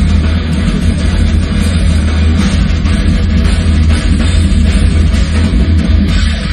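Heavy metal band playing live, loud and unbroken, heard from right beside the drum kit: drums and cymbals over guitar, with a dense, heavy low end.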